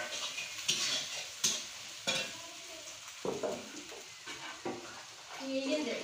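Metal spatula scraping and knocking around an iron kadai, six or so irregular strokes, while masala sizzles in hot oil.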